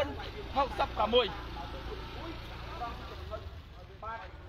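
People talking for about the first second, then fainter scattered voices over a steady low rumble.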